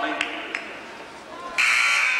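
A gymnasium scoreboard buzzer sounds suddenly about a second and a half in, loud and harsh, after a stretch of gym noise with a few short thumps.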